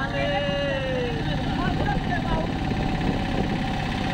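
Steady running noise of a moving road vehicle, engine and wind on the microphone together, with a voice over it in the first second and faintly again in the middle.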